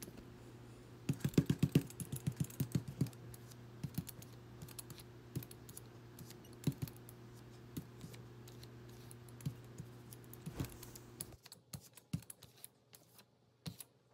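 Hand brayer rolling tacky acrylic paint: a quick run of sharp, sticky clicks about a second in, then scattered clicks as the roller goes back and forth over the paper stencil. A steady low hum in the background cuts off near the end.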